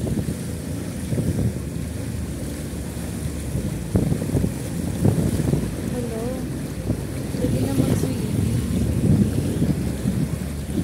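Floodwater rushing and splashing continuously along the side of a vehicle as it ploughs through a flooded street, with irregular surges of the bow wave.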